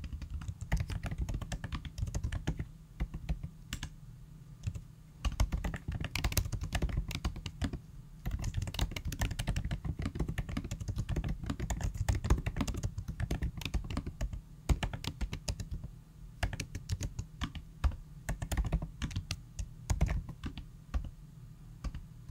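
Typing on a computer keyboard: irregular runs of quick key clicks, broken by short pauses.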